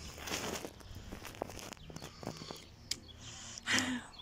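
Footsteps on grass and rustling of a handheld phone being moved, with scattered small clicks and a brief voice sound near the end.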